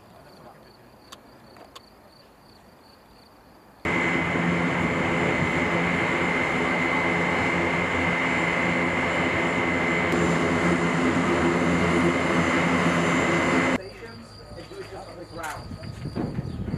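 Turbine aircraft engines running: a loud steady rush with a high whine over a low hum. It starts abruptly about four seconds in and cuts off abruptly about ten seconds later. Before and after it, faint insect chirring.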